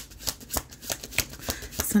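A deck of tarot cards being shuffled by hand: a rapid, uneven run of soft clicks and slaps as the cards slide over one another.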